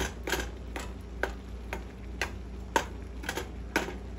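A plastic spatula chopping through noodles and knocking on the bottom of a non-stick frying pan, sharp taps about twice a second.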